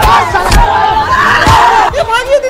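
A crowd of people shouting and yelling over one another in a brawl, with a few dull thumps.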